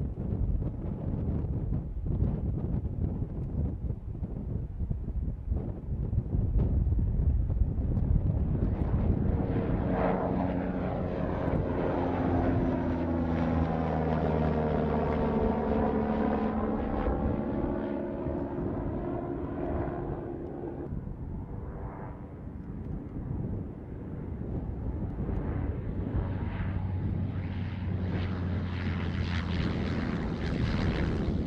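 MQ-9 Reaper drone's turboprop engine flying past low overhead. After a stretch of steady rumbling, a pitched engine drone swells from about ten seconds in, is loudest around the middle, then drops in pitch and fades as it goes away. Near the end a second engine tone rises again.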